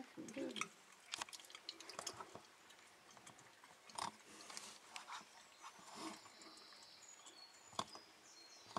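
Faint, irregular clicks and taps. Faint high bird chirps come in from about six seconds in.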